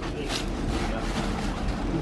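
Plastic bubble wrap rustling and crinkling as it is handled and wheels are lifted out of it, a steady hiss with a few sharper crackles.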